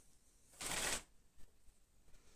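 A brief rustle, about half a second long, of cotton crochet thread and fabric being handled and pulled through with a crochet hook, against near silence.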